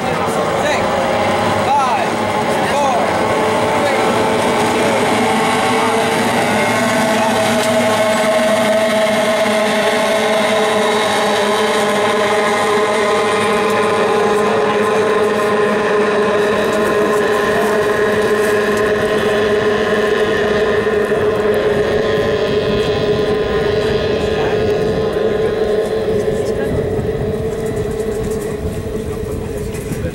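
A pack of J-class racing hydroplanes' small outboard engines running flat out together, several steady overlapping whines, fading a little near the end as the pack moves off.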